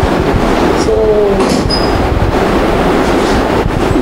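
A loud, steady low rumble of background noise, with a woman saying one short word about a second in.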